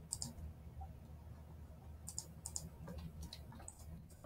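A few faint clicks of a computer mouse in small groups while structures are drawn in chemistry drawing software, over a low steady room hum.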